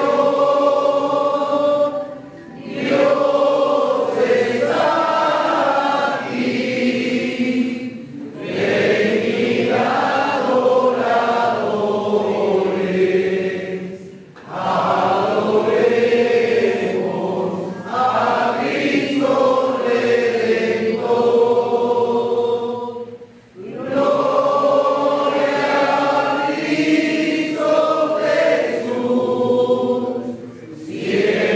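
A group of voices singing a slow hymn in long phrases, with brief breaks for breath every few seconds.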